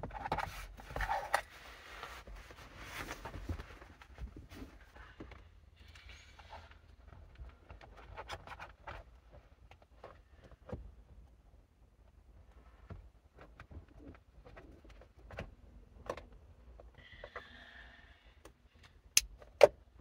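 Soft fabric rustling and small scattered clicks as a headrest neck pillow's straps and plastic snap clips are worked through a car seat's belt openings, with two sharp clicks near the end.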